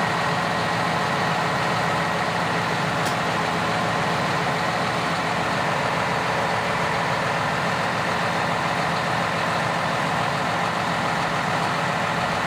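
John Deere 6150R tractor's diesel engine running steadily while still cold.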